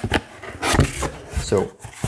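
Cardboard shipping box being handled and its flaps pulled open: cardboard rubbing and scraping, with a couple of sharper knocks in the first second.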